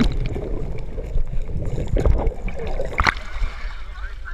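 Muddy water sloshing and gurgling, heard muffled and rumbling with the microphone under the water, as a person is pushed through a flooded tunnel; a couple of sharp knocks about two and three seconds in.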